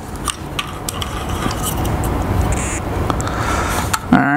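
Steady rumbling background noise that swells over the first second and then holds, with a few light clicks from the small streaming box being handled.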